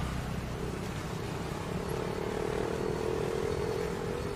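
Tractor towing a water tanker trailer crossing close by, its diesel engine running with a steady drone that swells as it passes, over light street traffic.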